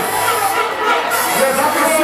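Loud live music played in a hall, with voices from the stage and crowd noise mixed in.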